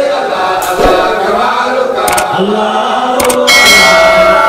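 A group of men chanting a devotional mawlid song in unison in praise of the Prophet, voices carried on a microphone.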